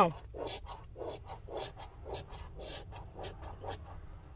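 Round handheld scratcher tool scraping the coating off a scratch-off lottery ticket in short, quick strokes, about three or four a second.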